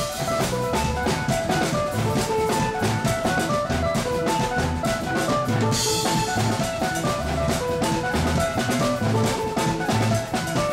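Live band playing up-tempo Colombian dance music: a busy drum kit and percussion beat with bass drum and snare under short melodic phrases, and a cymbal-like splash about six seconds in.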